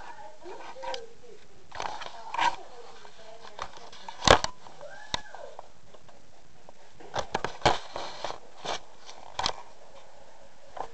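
Handling noise of a handheld camera being moved about and set against a laptop: scattered knocks and clicks, the loudest a sharp knock a little past four seconds in and a cluster of clicks near the end, with a few brief vocal sounds between them.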